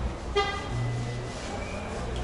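A single short car-horn toot, steady in pitch, about a third of a second in.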